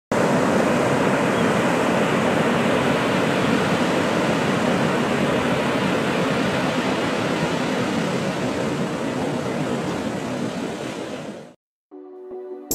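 Steady rush of ocean surf washing onto a beach, easing slightly and then cutting off near the end.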